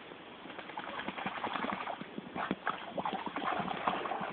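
A dog paddling and then wading through a shallow stream, its legs splashing the water in quick, irregular strokes that grow louder from about half a second in.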